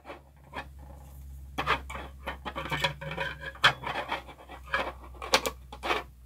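Plastic clicking, scratching and rubbing as a clear plastic display-stand arm is wedged onto a Super7 TMNT Ultimates action figure. There are a few sharper clicks at about three and a half and five and a half seconds in.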